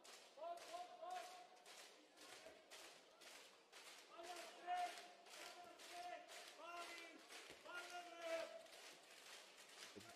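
Faint sports-hall sound during a handball game: sharp knocks in an even rhythm of about three a second, with several held shouts from voices in the hall over them.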